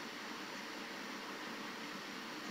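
Steady, even hiss of background noise with no deep sounds in it.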